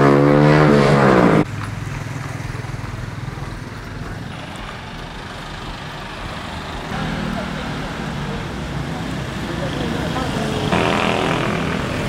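Street traffic in a town. A loud, steady-pitched drone cuts off suddenly about a second and a half in, and the general hum of passing motorbikes and cars follows.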